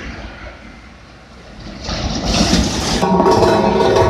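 Diesel engine of a road roller running close by as it compacts asphalt patches on a highway, with heavy traffic. About two seconds in the sound grows louder and a steady drone comes in.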